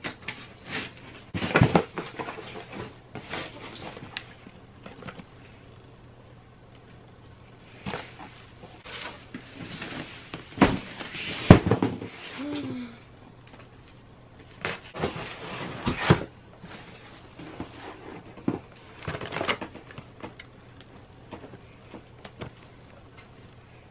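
A cardboard shipping box being opened and unpacked by hand: irregular rustling and scraping of cardboard flaps and packing, with sharp knocks and clicks, the loudest about halfway through. A brief falling squeak follows just after it.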